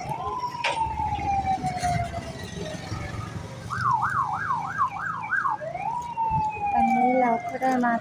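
Emergency vehicle siren over street background noise. It switches between a wail, which jumps up and then slowly falls in pitch (once near the start and again about six seconds in), and a fast warble of about three sweeps a second in the middle.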